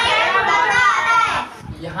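Speech: young voices talking at once, loudest for about the first second and a half, then a single quieter voice.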